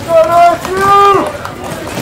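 A voice shouting a two-part call across the field: a short high note, then a lower one held for about half a second.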